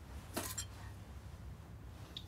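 A string of pearl beads set down on a bedside table: one brief clink about half a second in, over a faint low room hum.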